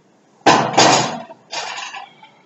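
Loaded barbell and iron weight plates clanking against a steel rack: two loud metal clanks close together about half a second in, then a third near the end, each ringing briefly.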